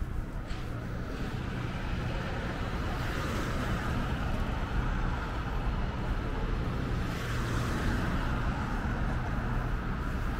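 Steady road traffic noise from cars on the adjacent road, swelling twice as vehicles pass, around the middle and again near the end.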